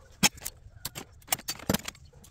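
Small hard scrap pieces clattering into and against plastic storage totes: a handful of sharp, separate clacks through the two seconds.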